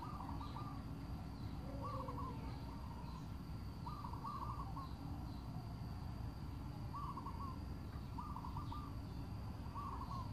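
A bird calling repeatedly: short phrases of several quick notes, about every one to three seconds, over a steady low background noise.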